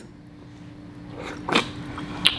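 A bite into a sauce-drenched braised lamb shank: a single short wet mouth sound about a second and a half in, over a faint steady hum.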